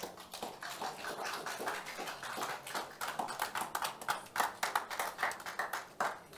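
Audience clapping: a dense, uneven run of hand claps.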